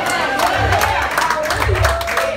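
Church congregation calling out praise over one another, with scattered hand clapping and a low thump repeating about every three-quarters of a second.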